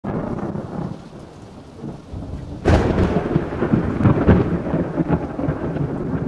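Thunderstorm sound effect: a steady hiss of rain, then a sudden loud thunderclap about two and a half seconds in that rolls on as a rumble.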